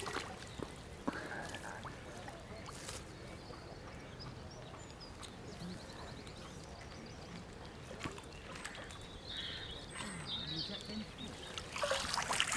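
Lake water splashing around a landing net held in the shallows, then quieter lapping with scattered drips, and more splashing near the end as the net is drawn up. Small birds chirp now and then.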